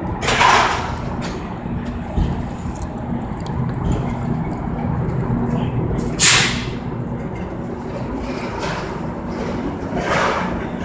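Amtrak passenger train pulling slowly into a station platform: a steady low rumble and hum, with two short hissing bursts, one about half a second in and one about six seconds in.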